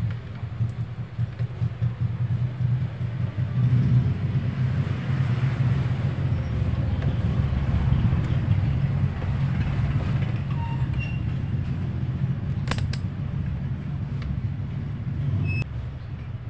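A steady low mechanical rumble, like an engine running nearby, that eases off about a second before the end, with one sharp click about 13 seconds in.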